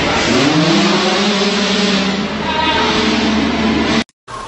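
Car engine running at high revs under load on a chassis dynamometer, loud, its pitch climbing over the first second and then holding steady until it cuts off abruptly at the end.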